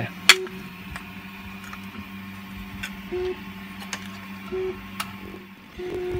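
3D-printed PLA parts clicking as they are handled and set down: one sharp click about a third of a second in, then a few fainter ones. Under them runs the steady hum of a 3D printer at work, its stepper motors adding a higher tone that comes and goes.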